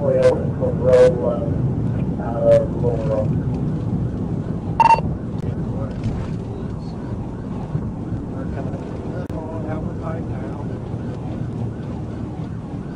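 Steady engine, tyre and wind noise inside a police cruiser travelling at about 100 mph, with brief bursts of voice in the first few seconds and a single sharp click with a short tone about five seconds in.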